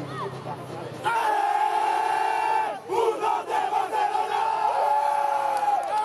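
A team of men shouting together in unison as a victory cry. One long held shout starts about a second in, breaks off briefly near three seconds, then another long cheer is held almost to the end.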